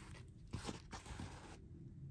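Clear plastic film on a diamond painting canvas crinkling as the canvas is handled, with a few short crackles in the first second, then quieter.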